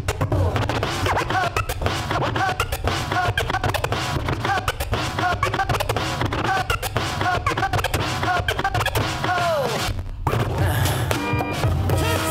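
Turntablist scratching records on two turntables over a hip-hop beat: rapid back-and-forth scratches that swoop up and down in pitch. About ten seconds in the sound cuts out for a moment and a different sample comes in.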